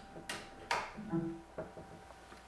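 A USB flash drive pushed into a PC's USB port, two sharp clicks, followed about a second in by the short low Windows 7 device-connect chime that signals the drive has been detected.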